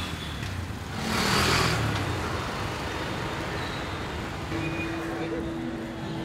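Busy street traffic with a bus passing close by: engine rumble and a louder rush of noise about a second in. A steady held tone comes in near the end.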